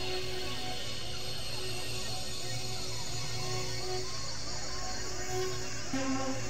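Experimental electronic synthesizer drone music: a steady low drone under a held mid tone that swells and fades, with many small gliding notes higher up.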